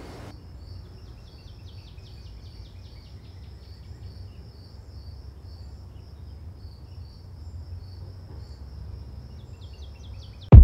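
Outdoor field ambience of insects, likely crickets, chirping: a high-pitched pulsing chirp repeating about twice a second, over a steady low rumble.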